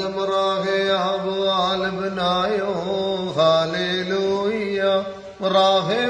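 A voice chanting a Syriac liturgical hymn (kukiliyon) in a flowing, ornamented melody, with a brief break about five seconds in before the next phrase.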